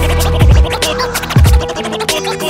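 Hip hop outro beat with DJ turntable scratching: short scratched cuts over the beat, with two deep kick drums about a second apart and ticking hi-hats.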